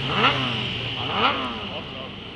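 Racing motorcycle's engine accelerating out of a corner, its revs climbing in two sweeps about a second apart, then the sound fading as it pulls away.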